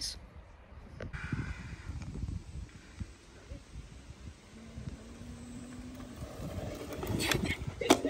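Wind buffeting the microphone outdoors, with a short call about a second in and a brief burst of voice near the end.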